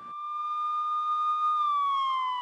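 Police car siren wailing: one long tone that swells in, holds steady, then begins to fall slowly in pitch about one and a half seconds in.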